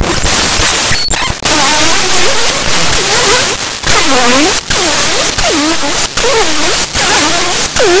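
Loud static-like hiss, broken by brief dropouts, with a warbling tone under it from about a second and a half in that swoops down and back up a bit faster than once a second.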